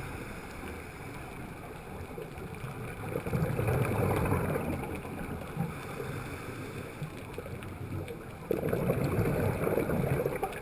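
Underwater ambience of a scuba dive: a steady rush of water noise, with two long, gurgling rushes of exhaled regulator bubbles, about three seconds in and again near the end.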